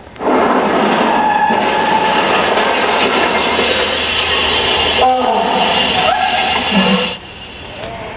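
Opening soundtrack of a drink-driving film: a loud, steady rushing noise, as of a vehicle coming down a road at night, with a voice breaking through about five seconds in. It drops away sharply about seven seconds in.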